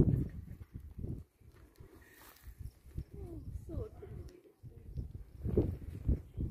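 Outdoor phone recording with low, gusty rumble of wind on the microphone, starting with a sudden thump, and a faint voice near the middle.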